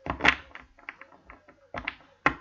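A deck of tarot cards shuffled by hand: the cards click and slap against each other in a quick, irregular run. A sharper knock comes near the end as the deck is squared on the table.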